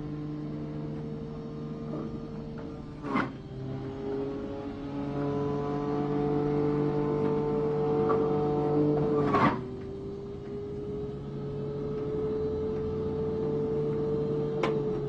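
Electric juicer motor running with a steady whine. Its pitch drops slightly at each of two knocks, about three seconds in and again near ten seconds.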